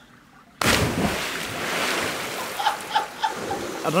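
Steady rushing of sea surf, starting abruptly about half a second in after near silence.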